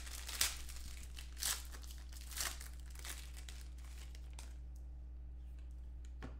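Gold foil trading card pack being torn open and crinkled in the hands, with a few louder crackles in the first two and a half seconds; the crinkling dies down after about four and a half seconds.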